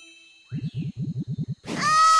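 A ringing chime tone fades out, followed by about a second of fast low pulses, roughly ten a second. Near the end, a whoosh leads into a cartoon girl's loud, wavering wail of crying.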